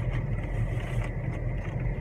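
Steady low hum of a car idling, heard from inside the cabin, with a thin steady whine above it and a few light clicks as items are handled.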